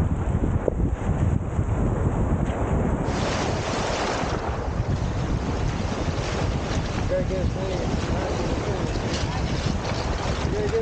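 Small lake waves breaking and washing up over a pebble shore, heavily covered by wind buffeting the microphone.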